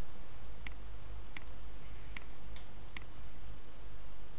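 Computer mouse clicking four times, about one click every 0.8 seconds, over a steady low hum.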